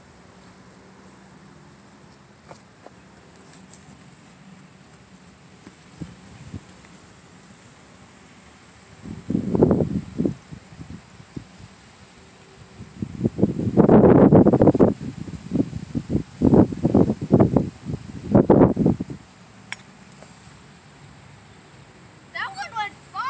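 Outdoor ambience with a steady high-pitched insect drone. In the second half, several rumbling bursts of noise, each about a second long, buffet the microphone.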